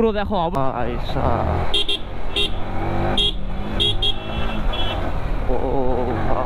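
A string of short vehicle-horn toots, some in quick pairs and one held a little longer, from about two seconds in to near five seconds. Under them is steady wind and road rumble from a moving motorcycle.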